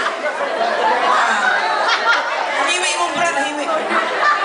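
Several voices talking and chattering at once, with no other sound standing out.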